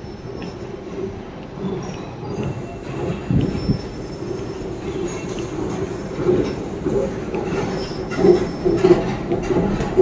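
The mechanical rumble of a London Underground station, with squeals over a steady low drone. It grows louder and more uneven over the last few seconds.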